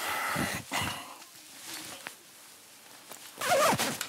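Rustling of clothing and of things being handled, loudest in the first second. A short voice sound comes near the end.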